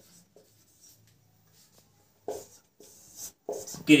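Felt-tip marker writing on a whiteboard: a few short scratching strokes, mostly in the second half.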